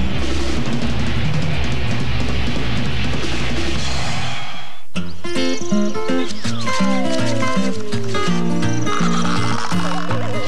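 Drum-kit solo with crashing cymbals over a steady low beat, cutting off just before halfway. After a brief gap a different light tune starts, with a long falling slide in pitch.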